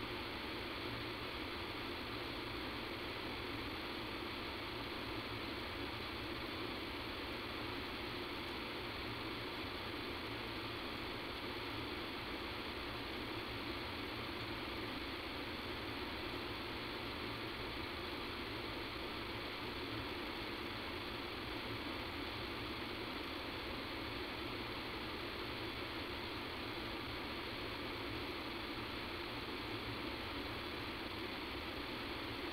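Steady hiss and hum of a telephone conference-call line with nobody speaking, unchanging throughout; the recording has a sound-quality fault that leaves this noise on the line.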